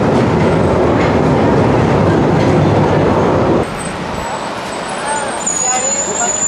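Loud, steady noise of a London Underground train at the platform, cutting off suddenly about three and a half seconds in. After that, quieter street background with faint voices.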